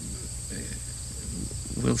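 Insects trilling steadily in a field, a constant high-pitched buzz, with a low hum underneath.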